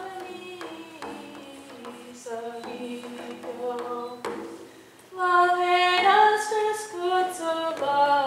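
A woman singing a fifteenth-century Spanish song solo, with a few light taps on a hand-held frame drum. About five seconds in her voice becomes much louder on long held notes.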